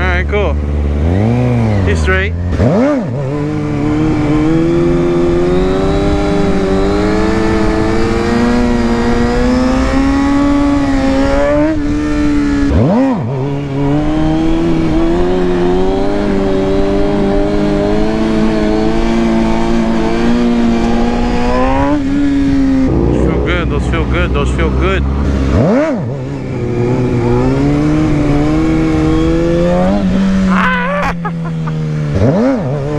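Motorcycle engine of a stunt sportbike held at steady high revs for long stretches while the rider balances it in a wheelie, the pitch drifting slowly up and down. A few quick rev blips come between the long holds.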